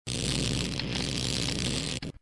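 Sound effect for a studio logo ident: a dense, noisy rush over a low steady hum, starting abruptly out of silence and cutting off after about two seconds.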